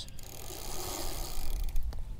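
Bicycle chain running through the rear derailleur and 7-speed Shimano cassette as the crank is turned, with a few sharp clicks near the start and again near the end.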